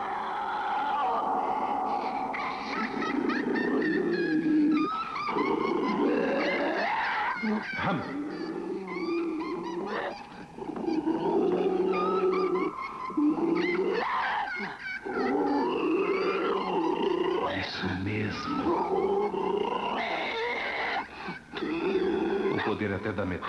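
Creature roaring and growling, rising and falling in pitch with short breaks, as a horror-film monster sound.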